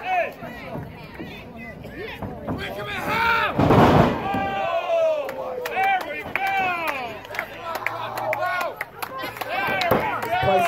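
A wrestler slammed down onto the ring mat: a loud thud about three and a half seconds in, the loudest sound here, as spectators shout around it.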